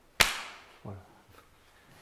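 One sharp, loud smack of a sudden strike during a sticky-hands exchange, with the room ringing briefly after it. A short spoken word follows about a second in.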